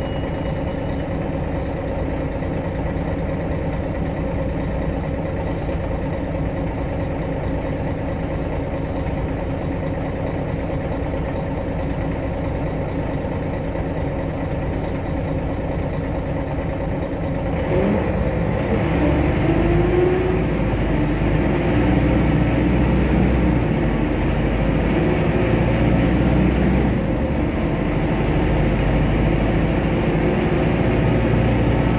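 Engine and running noise of a MAN NG313 articulated city bus heard from inside the passenger cabin, a steady low hum. A little past the middle the engine note rises and the sound grows louder as the engine works harder.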